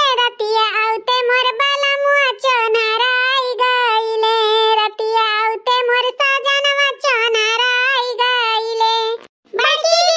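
A high-pitched, cartoon-style voice singing an unaccompanied melody in phrases of long held, wavering notes, with short breaks between phrases and a brief pause near the end.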